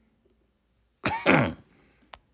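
A man clears his throat once, about a second in, a short rasping vocal burst.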